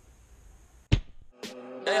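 A sharp knock about a second in as a hand handles the camera, then a softer click, and outro music with a beat starting near the end.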